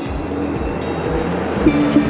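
Logo-reveal sound effect: a rushing swell of noise with a thin high whistle climbing slowly in pitch. Near the end it breaks into a bright shimmering hit as synth music starts with a low pulsing tone.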